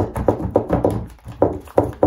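A fuselage mold rocking and banging against a workbench top, a rapid run of about a dozen hollow knocks. The mold is wobbling because it is not yet blocked up, which makes it unstable for laying up cloth.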